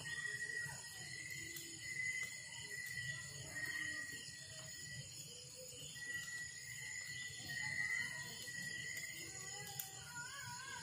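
Night insects trilling steadily in one high, unbroken note that drops out briefly now and then, with a few faint crackles from a wood fire.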